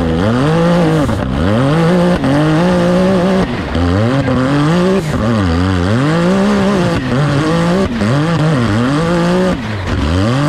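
Rock bouncer buggy's engine revving hard under load, its revs climbing and dropping over and over, roughly once a second.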